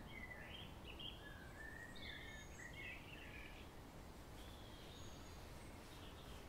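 Faint bird chirps over a low, steady background rumble: a run of short gliding twitters in the first three seconds and another brief call about five seconds in.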